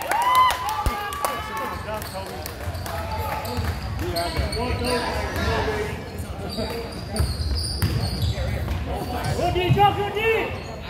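A basketball dribbled on a hardwood gym floor, a run of repeated bounces echoing in the hall. People's voices call out near the start and again near the end.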